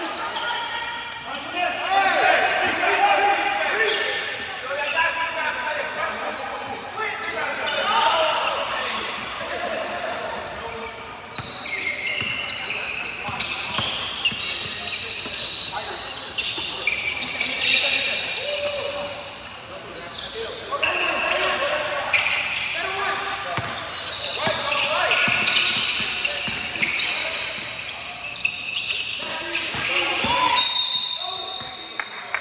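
A basketball bouncing and dribbling on a hardwood gym floor, with voices of players and spectators echoing in the gym.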